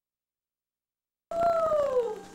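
About a second of dead silence, then a loud pitched call cuts in abruptly: one long howl-like tone sliding slowly downward in pitch.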